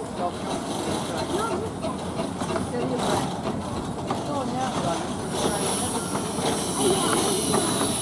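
Kerr Stuart 0-4-2 narrow gauge steam locomotive 'Bonnie Dundee' running slowly into a station platform, its wheels clicking over the rail joints, with people chattering. From about five seconds in, as it draws up, a steady high-pitched hiss of steam comes from the engine.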